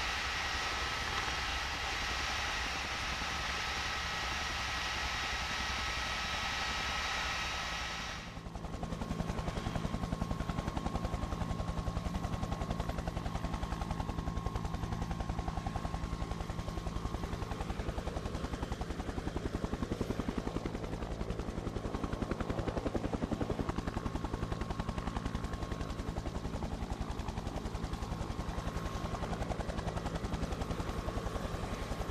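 A steady hiss with a couple of faint steady whining tones, which cuts abruptly about eight seconds in to a helicopter's rapid rotor chop over a low engine hum that runs on steadily.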